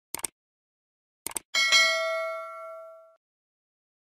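Subscribe-button animation sound effect: two quick double mouse clicks, then a bell-like notification ding that rings out with several steady tones, fading over about a second and a half.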